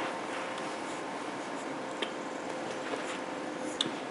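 Faint wet mouth sounds and a few small clicks from a bulldog eating a treat from a hand, over a steady low room hiss.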